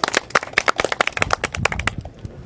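A small group of people clapping: quick, irregular claps that die away near the end.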